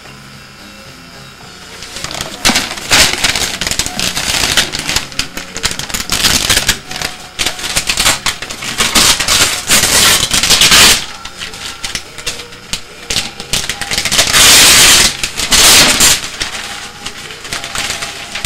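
Wrapping paper being torn and crinkled as a Christmas present is unwrapped: loud, crackly rustling in uneven bursts that starts about two seconds in.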